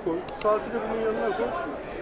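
People talking at a market stall, with two quick sharp clicks a little under half a second in.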